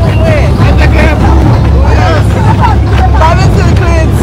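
People's voices talking and calling out over the steady low rumble of a motorboat running across the water.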